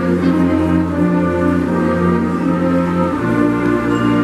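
Middle school concert band, with flutes, clarinets, saxophones and low brass, playing sustained full chords, the bass moving to a new note about three seconds in.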